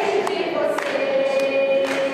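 A group of children singing together, holding one long note through the second half, with hand claps roughly every half second.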